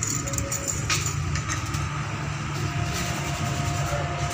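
Steady low drone of an idling engine, even and unchanging throughout.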